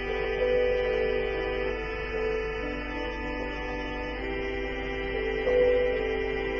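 Live instrumental passage on keyboard: sustained chords held for a second or two each before moving to the next, with no singing.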